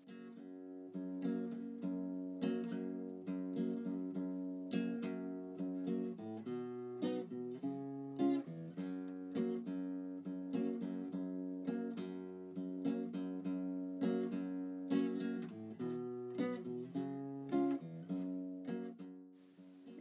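Background music: acoustic guitar playing a steady run of plucked notes.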